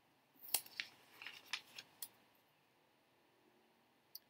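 Paper collage cutouts and small craft pieces handled on a cutting mat: a quick run of crisp paper clicks and rustles about half a second in, over by two seconds.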